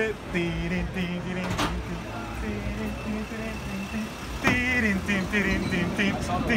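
Low engine and road rumble of a van, heard from inside the cabin, with people talking over it. A single sharp click comes about one and a half seconds in.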